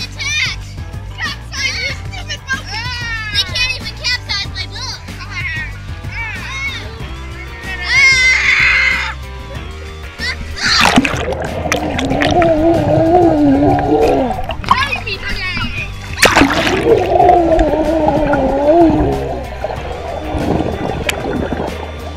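Children shouting and squealing in a swimming pool, then a splash about eleven seconds in as they plunge underwater. The sound turns muffled, with rushing water and a wavering tone, and a second splash comes about sixteen seconds in. Background music with a steady low beat plays throughout.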